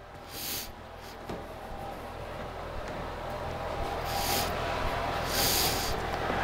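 Short nasal breaths close to a clip-on microphone, three soft hissy puffs spaced over several seconds, over a low steady background hum.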